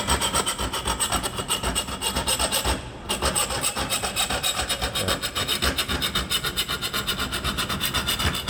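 Magic Saw hand saw cutting through a copper pipe clamped in a vise: fast, even back-and-forth rasping strokes, about four a second, with a short break about three seconds in.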